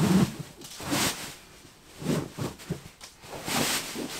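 Fabric rustling as a large stuffed storage sack holding a down sleeping bag is handled and lifted, in a few short, separate swishes.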